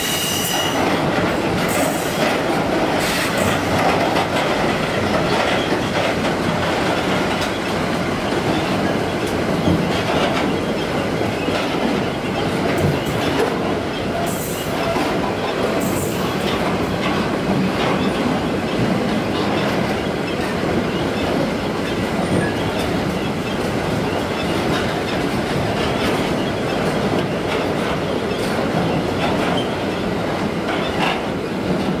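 Freight train of loaded double-deck car-carrier wagons rolling past close by, its wheels rumbling and clattering on the rails in a steady, loud stream. A brief high-pitched wheel squeal comes right at the start.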